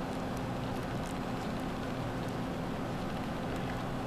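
Steady low background hum with a few faint, light clicks scattered through it.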